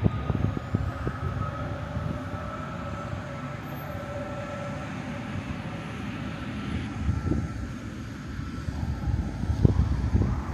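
Road traffic passing: a low, uneven rumble with a steady hum that fades out about seven seconds in.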